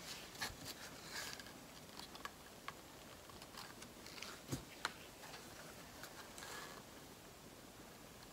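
Faint, scattered light clicks and taps of small paper and plastic cups being handled as acrylic paint is poured from one into a clear plastic cup, with a couple of soft rustles.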